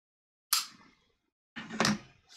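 Pipe smoking just after a relight: a sharp click about half a second in, then a louder breath of smoke puffed out near the end.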